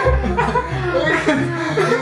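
Two young men laughing hard together, loud and continuous.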